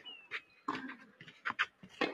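A few short, sharp knocks of a tennis rally on a clay court: the ball bouncing and the players' feet on the clay between strokes.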